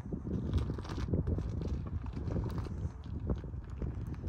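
Footsteps of a person walking, a run of short knocks over a steady low rumble.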